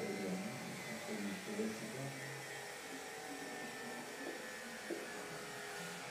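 Faint speech in a lecture room, with short spoken phrases over a steady electrical buzz and hiss.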